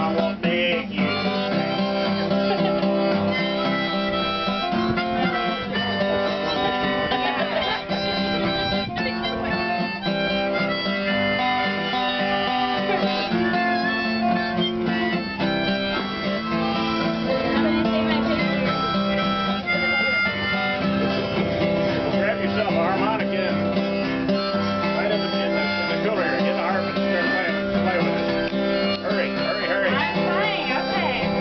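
Acoustic guitar strummed, with several harmonicas playing sustained chords and notes along with it.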